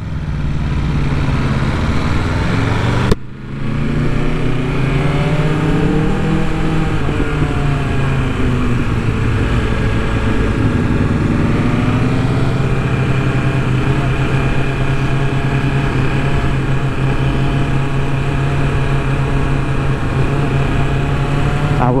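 BMW S1000RR's inline-four engine under way on a motorcycle, its pitch rising and falling with throttle and gear changes for the first dozen seconds, then holding steady at a low cruise. It drops out briefly about three seconds in. Wind rush runs underneath.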